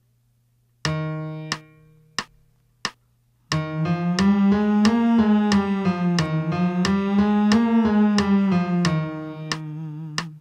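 Piano playing a vocal warm-up exercise: a held starting note, three short cue notes, then a five-note scale pattern that climbs and comes back down twice.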